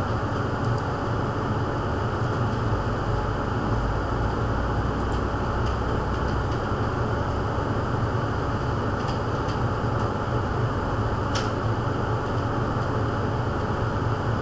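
Steady low background hum and noise, with a faint click or two, the clearest a little after eleven seconds in.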